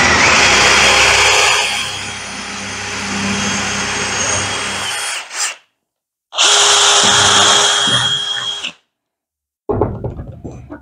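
DeWalt cordless drill boring a hole through a small pine block with a twist bit, loudest for about the first second and a half and then lower as the bit goes deeper. It stops about five seconds in, then runs again for about two seconds with a steady whine. A few knocks follow near the end.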